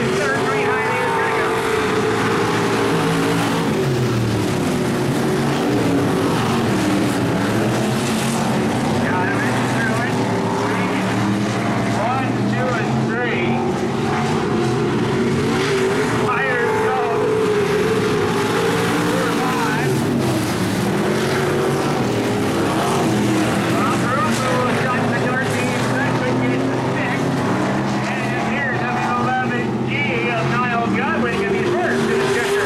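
Several dirt-track stock car engines running at race pace, their pitch rising and falling over and over as the cars lap the oval and pass.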